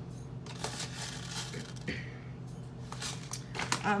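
A spoon scooping hemp hearts into a small bowl: scattered light clicks and scrapes, more of them near the end, over a steady low hum.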